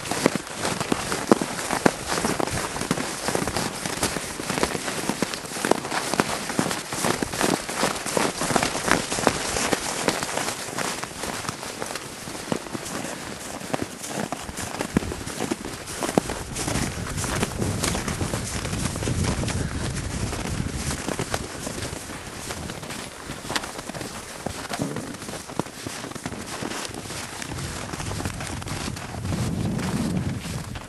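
Horses' hooves crunching in packed snow, a rapid, irregular run of crackling crunches.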